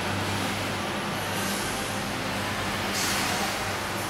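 Steady background hiss with a low, even electrical hum, and a brief brighter hiss about three seconds in.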